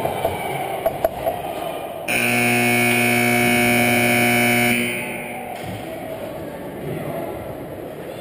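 Ice rink scoreboard horn sounding once, a loud, steady buzzing tone lasting about two and a half seconds, beginning about two seconds in. A couple of sharp clicks come just before it, over steady rink noise.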